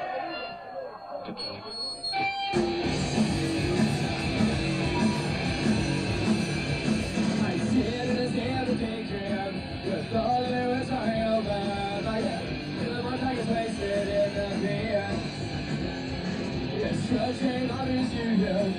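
A punk rock band playing live, with electric guitar, bass and drums starting together suddenly about two and a half seconds in and then running at full volume.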